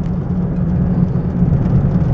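Steady low drone of engine and road noise inside the cab of a pickup truck driving along.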